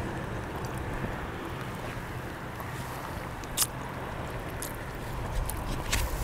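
Outdoor wind noise on the microphone, a steady low rumble, with one short sharp click about three and a half seconds in.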